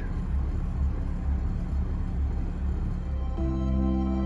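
A low, steady rumble of the yacht's engine idling while it holds position. About three and a half seconds in, ambient background music with long held tones comes in over it.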